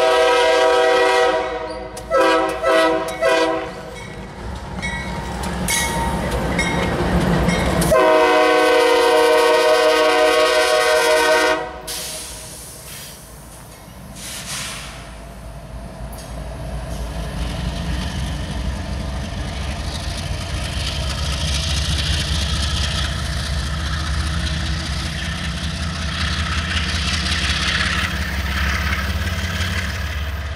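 A Nathan K5H air horn on CSX diesel locomotives sounds a long blast, a few short blasts, then another long blast that cuts off about 12 s in. After that the locomotives' diesel engines and wheels rumble as they pass, the engine sound building steadily toward the end.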